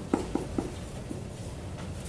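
Dry-erase marker writing on a whiteboard: a few short, faint taps and strokes in the first half-second or so, over a steady low room hum.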